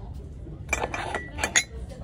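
Ceramic mugs clinking against each other and the shelf as they are handled: a few sharp clinks with a short ring, the loudest about one and a half seconds in.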